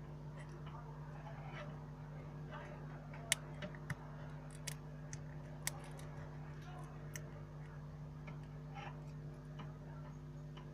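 A small screwdriver on the frame of a disassembled Nokia 930 makes a handful of short, sharp metallic clicks, spread over a few seconds midway. A steady electrical hum runs underneath.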